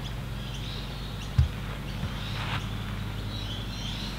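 Outdoor background of birds chirping faintly over a steady low hum, with one dull low thump about a second and a half in.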